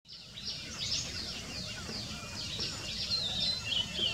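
Small birds calling in the background with many short, falling chirps, several a second, over a steady low rumble.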